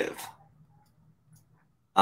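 A man's voice trails off at the start, then near silence with only a faint brief sound or two.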